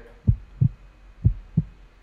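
Heartbeat sounds in a regular lub-dub rhythm: two low thumps about a third of a second apart, repeating about once a second, over a faint steady low hum.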